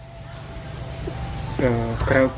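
Outdoor background noise with a low, steady rumble, then a person starts speaking about one and a half seconds in.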